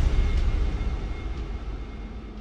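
A deep rumbling drone of trailer sound design, fading away steadily over the credits.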